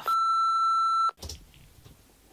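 A steady single-pitch censor bleep, about a second long, covering a swear word that starts with "f"; it cuts off suddenly.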